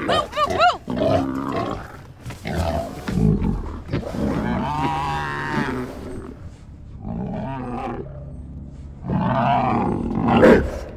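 Growls, grunts and squeals of a pig-like mutant creature in a string of separate calls: a run of high swooping squeals right at the start, rough lower growls, a longer drawn-out call about five seconds in, and another loud call near the end.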